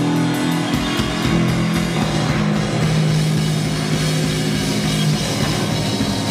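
Live rock band playing loud: electric guitars holding sustained chords over a steady drum-kit beat.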